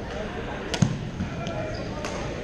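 Badminton rackets hitting the shuttlecock in a rally: one sharp, loud hit just under a second in, then a few lighter hits. Voices and play from neighbouring courts carry on in the background.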